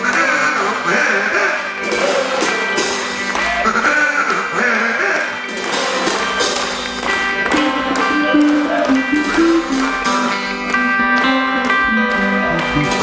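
Live rock band playing loud music, with sustained instrument tones and wordless, wavering vocal sounds into a microphone.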